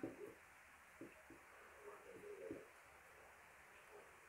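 Near silence, with a few faint, low cooing calls from a bird.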